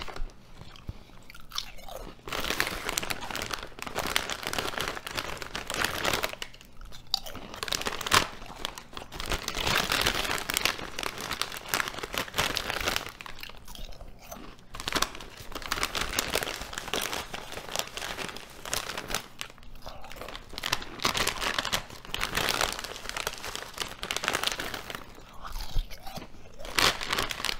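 Crunching and chewing of Ruffles ridged potato chips, in bouts a few seconds long broken by short pauses between mouthfuls.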